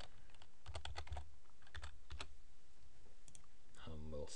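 Typing on a computer keyboard: a quick run of keystrokes about a second in, then a few more around two seconds in, as a short word is entered into a code editor.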